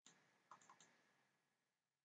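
Faint computer mouse clicks, a few in quick succession about half a second in, over a low hiss.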